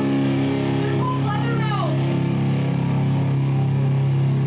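Live band's amplified electric guitar and bass holding a steady low drone between song parts, with a shouted voice sliding up and down in pitch between one and two seconds in.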